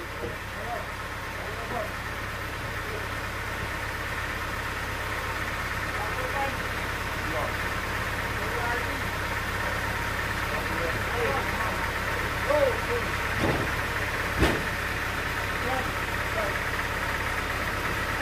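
Sawmill engine running steadily at idle while no cut is being made, a low hum with a steady whine on top, growing slightly louder. Short voice calls come over it, and a few sharp knocks come near the end, the loudest about three quarters of the way through, as the log is shifted on the carriage.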